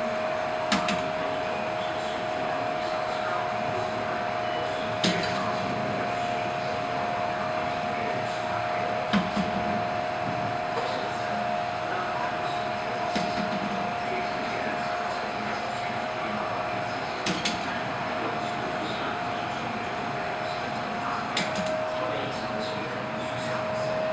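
Sharp metallic clicks about every four seconds from an overbalanced-wheel perpetual motion display, its hinged steel-ball arms knocking over as the wheel turns, over a steady high-pitched hum.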